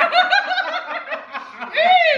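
A woman and a man laughing together in quick high-pitched bursts, with a long rising-and-falling note near the end.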